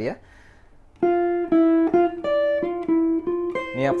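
Archtop jazz guitar playing a single-note line, starting about a second in: a run of quick picked notes, many repeating the same pitch with a few higher notes between.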